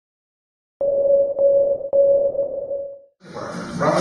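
A steady mid-pitched electronic tone, struck three times about half a second apart, that fades out about three seconds in. Near the end, square-dance music begins.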